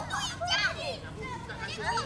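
Several young girls chattering and calling out to each other at once, high-pitched voices overlapping.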